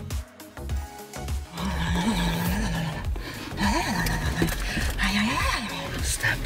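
Background music; from about a second and a half in, a pitched voice-like sound slides up and down in pitch over it.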